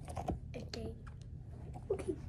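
A few faint clicks and soft rustles, likely handling noise as a hand puppet is moved, over a steady low hum.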